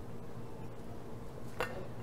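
Quiet room tone with a steady low hum and a faint single click about one and a half seconds in.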